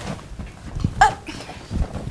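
A playful scuffle on a couch: a short, sharp yelp about a second in, with soft thumps of blows and bodies against the cushions.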